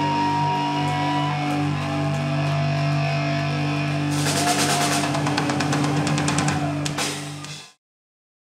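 Live punk rock band holding one sustained chord on electric guitars and bass, with a thin feedback whine over it. From about four seconds in the drummer adds a rapid flurry of cymbal and drum hits, the usual ending flourish of a song. The sound cuts off abruptly near the end.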